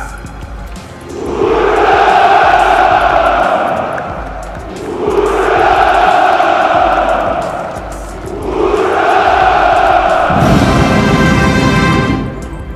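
Massed ranks of soldiers shouting a drawn-out "Ura!" three times, each cheer a long swelling call of a few seconds. Music comes in near the end.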